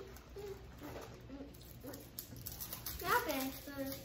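Indistinct speech, with a high-pitched voice, most likely a child's, growing louder near the end.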